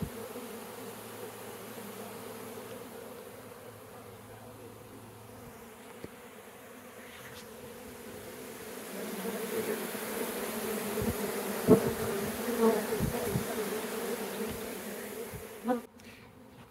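Swarm of honey bees buzzing steadily as they fly back into a mating nuc and fan at its entrance. The buzz grows louder a little past halfway, with a few thumps near that point.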